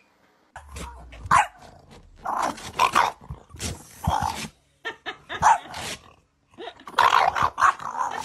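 French bulldog growling and barking in a string of short, rough bursts, starting about half a second in.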